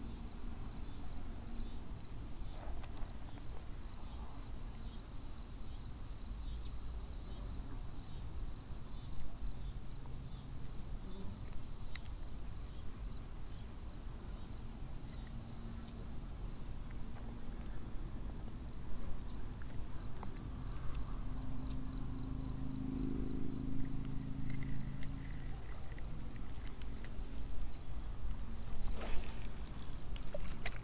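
Insects chirping in a steady, even, high-pitched pulse of several chirps a second.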